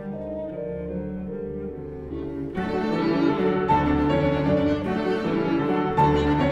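Piano trio of violin, cello and piano playing classical chamber music, with the cello's held notes leading at first. About two and a half seconds in, the sound suddenly grows fuller, brighter and louder.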